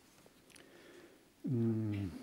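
Low room tone for about a second and a half, then a man's short drawn-out vocal sound, a hesitation sound falling in pitch, near the end.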